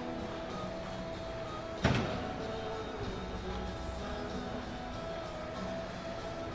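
Background music playing steadily, with a single loud thump about two seconds in.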